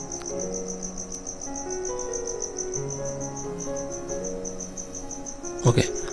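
A cricket chirping in a steady, rapid high-pitched pulse throughout, over soft background music of held notes that change every half second or so.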